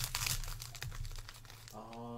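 Foil wrapper of a trading-card pack crinkling and tearing as it is opened by hand. Near the end comes a short hummed voice.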